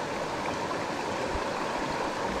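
Creek water running steadily over rocks, a continuous even rush.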